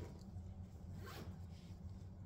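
A short rasping rustle about a second in, over a steady low hum.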